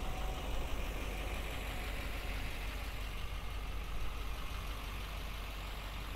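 Steady idle of the truck's 6.6-litre Duramax LMM V8 turbodiesel, a low, even rumble.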